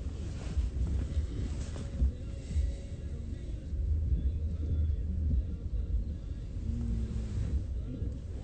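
Low, steady rumble of a police car's engine and road noise, heard from the back seat as the car drives.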